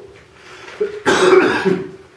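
A person coughing: one harsh cough about a second in, lasting under a second.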